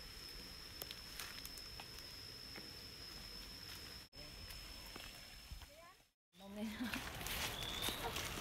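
Outdoor ambience with a steady high-pitched whine and a few faint clicks, which drops out abruptly twice. After a short silence about six seconds in, women's voices exclaim and call out.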